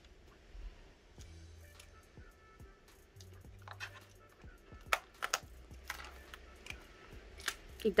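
A plastic photocard binder and a small keyring being handled: light rustling of plastic sleeves with a few sharp clicks and taps, most about five seconds in and again near the end.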